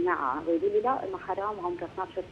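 Speech only: a woman talking over a telephone line, her voice thin and narrow.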